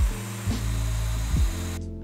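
Festool Domino DF500 joiner running as it plunges its 5 mm cutter into the workpiece to cut a mortise, a short burst that stops shortly before two seconds. Background music with low bass notes plays underneath.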